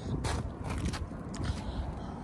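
Low wind and handling rumble on a handheld phone's microphone, with a few scattered light clicks.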